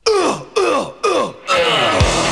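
Three short voice-like sounds, each sliding steeply down in pitch, about half a second apart. Music starts near the end.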